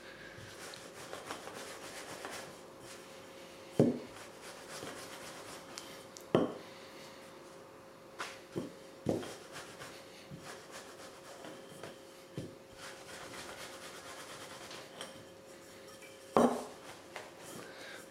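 Wooden rolling pin rolled over floured chapati dough on a wooden tabletop: a soft, steady rubbing, broken by a handful of sharp wooden knocks as the pin meets the table.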